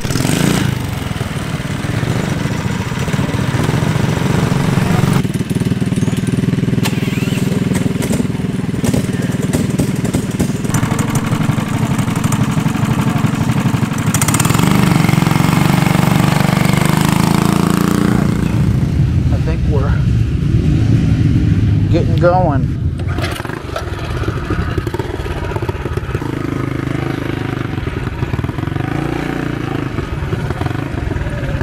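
Small engine running and revving across several cut-together shots, with voices over it.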